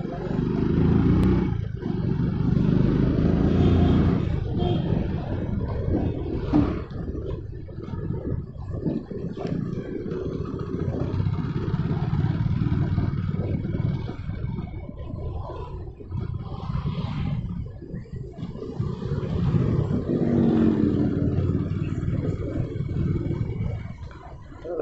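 Hero Splendor Plus motorcycle's small single-cylinder four-stroke engine running as the bike rides along at low town speed, with a brief rise in engine pitch about twenty seconds in.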